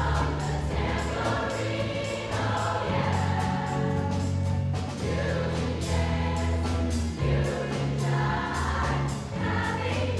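A large school choir singing a song in a hall, with keyboard accompaniment holding low notes beneath the voices.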